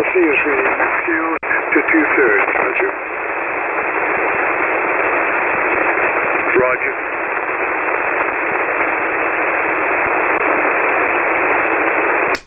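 Amateur radio receiver's single-sideband audio on the 40-metre band: a steady hiss of band noise squeezed into a narrow voice range, with a weak, garbled voice in it over the first three seconds and again briefly around the middle.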